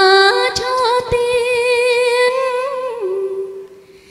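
A woman singing a long held note with vibrato, which steps down in pitch about three seconds in and fades away near the end.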